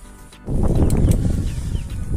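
Handling noise on a phone microphone: loud rubbing and rumbling that starts suddenly about half a second in, as the phone is moved and covered.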